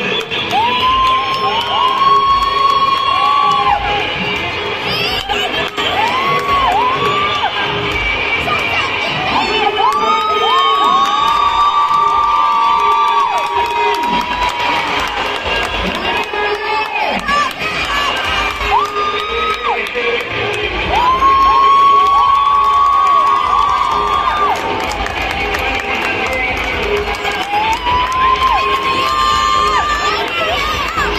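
A large crowd of schoolchildren cheering and shouting, with long drawn-out shouts that swell and fall again and again, loudest about two seconds in and again around three-quarters of the way through.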